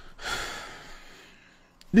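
A man's audible breath: a sharp, hissy intake about a second long that fades away, then a small mouth click just before he starts speaking.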